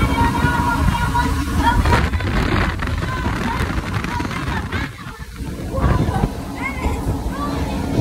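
Hurricane simulator wind at about 77 mph blasting over the microphone: a loud, gusting low rumble that eases briefly about five seconds in.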